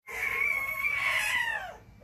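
One long pitched call, held level and then falling in pitch near the end.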